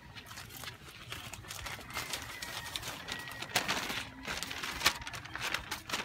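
Large paper chart rustling and crinkling as it is pulled down and handled, a dense run of sharp crackles that grows busier and louder in the second half.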